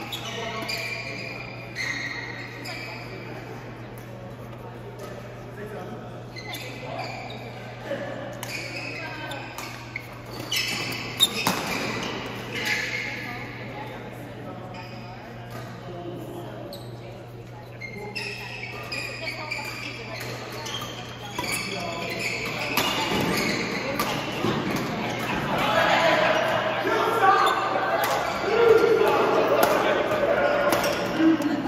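Doubles badminton in a large indoor hall: sharp racket hits on the shuttlecock and short sneaker squeaks on the court floor, with players' voices and a steady low hum underneath. There is a lull partway through between rallies, and the play gets busier and louder toward the end.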